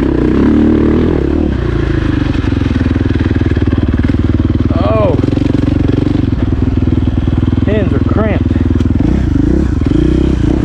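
KTM dirt bike engine running under way on a trail ride. The revs rise and fall briefly about halfway through and twice more near the end.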